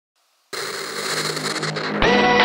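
Opening of an outrun electronic track: after about half a second of silence, a hiss-heavy synth sound with a low held note comes in and swells slightly.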